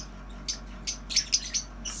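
Caged lovebirds giving short, high chirps, about half a dozen scattered through two seconds, over a low steady hum.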